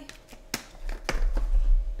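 Sharp plastic clicks, one about half a second in and another about a second in, followed by low thumps and handling noise, as a continuous glucose monitor's plastic sensor applicator is twisted open by hand.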